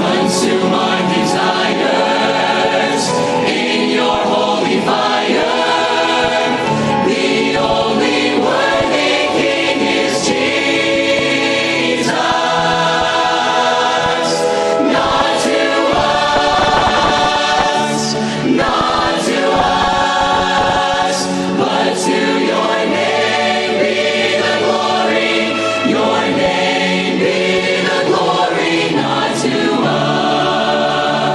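Large choir and lead vocalists singing a worship song with an orchestra of strings and brass, with a percussion hit every second or two.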